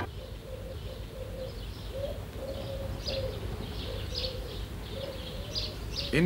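Pigeons cooing over and over, with small birds chirping high above them and a low background rumble.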